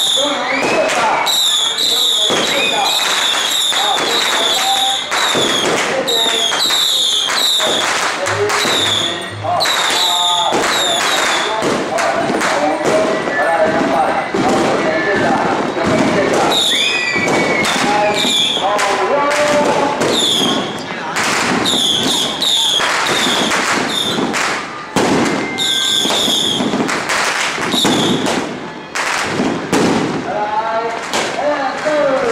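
Firecrackers going off in dense, irregular bangs, mixed with a crowd's voices and repeated short, high chirping tones.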